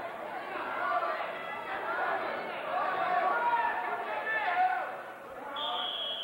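Wrestling spectators' overlapping shouts and chatter in a gymnasium. Near the end comes a single short blast of the referee's whistle, about half a second long.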